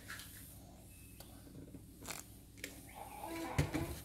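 Quiet kitchen with a few faint clicks and light taps from ingredients and utensils being handled at a bowl, and a brief faint voice a little after three seconds in.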